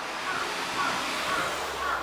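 A vehicle passing by on the street, its noise swelling and then falling away sharply at the end, with a low engine hum in the second half. A series of short chirps repeats about twice a second over it.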